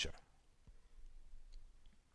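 Pause in close-miked speech: the last of a spoken word right at the start, then a faint click a little under a second in over quiet room tone.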